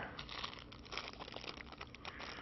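Small clear plastic parts bags crinkling in the hands as they are picked up and turned over, a fairly quiet run of irregular small crackles.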